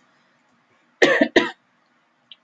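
A woman coughs twice in quick succession about a second in.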